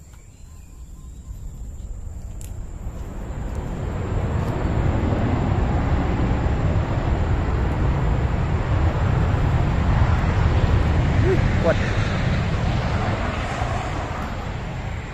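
Jet airliner passing overhead: a broad rumbling roar that swells steadily over about ten seconds, peaks near the end, then eases slightly.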